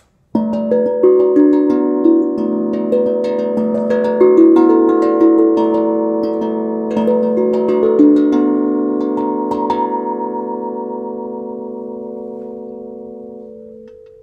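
12-inch Amahi steel tongue drum played with mallets: a melody of struck notes, each ringing on, for about eight seconds. The strikes then stop and the last notes ring and slowly fade away.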